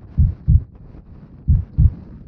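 Walking footfalls thudding through a body-mounted camera: low, heavy double thuds, pairs about a third of a second apart, repeating about every 1.3 seconds like a heartbeat.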